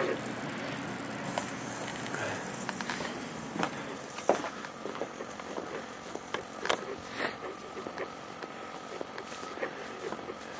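Handling and walking noise from someone carrying a camera outdoors: scattered light clicks and knocks over a steady background hiss.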